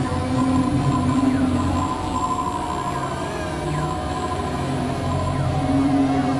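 Experimental electronic music: several tracks layered at once into a dense wash of held drones and tones that switch in and out, with pitches sliding slowly across it.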